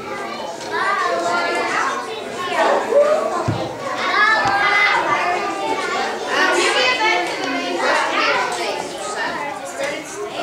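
A crowd of children chattering and calling out together, many overlapping voices in a large hall. There is a single low thump about three and a half seconds in.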